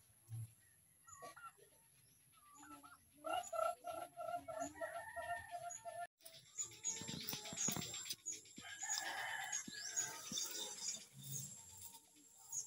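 Domestic turkeys calling: a run of short repeated yelps, about three a second, a few seconds in. After a brief dropout comes a busier stretch of calls with rustling and scattered high chirps.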